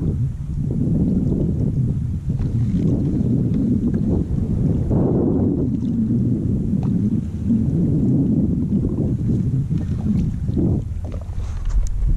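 Wind gusting on the microphone, with water sloshing against a kayak's hull.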